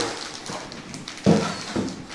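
Faint rustling of a plastic bag being handled, with a sharp click at the start, then a short "uh-huh" hum a little over a second in.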